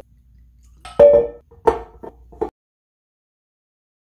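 Liquor poured from a glass bottle into a Glencairn tasting glass: a sharp knock about a second in, followed by a few short glugging bursts, then the sound cuts off abruptly.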